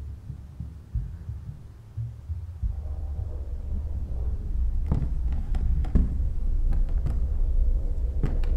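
Low, heartbeat-like throbbing in an animated film's sound design, thickening into a steady low rumble about a third of the way in, with a few short knocks in the second half.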